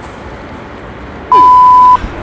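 A censor bleep: one steady, loud, high-pitched beep lasting about two thirds of a second, starting past the halfway point and cutting off sharply, over faint outdoor background noise.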